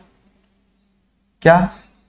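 A faint, steady low hum runs under near-quiet room sound, with a man saying one short word about one and a half seconds in.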